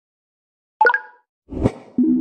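Intro logo sound effects: a short, bright pop with a brief ringing tone about a second in, then a whoosh with a deep low thud that swells and fades just before the logo appears.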